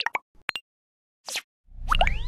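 Cartoon-style sound effects for an animated title card: a few quick pops in the first half-second and a short whoosh a little past the middle. Near the end comes the loudest part, a low boom with a rising zip.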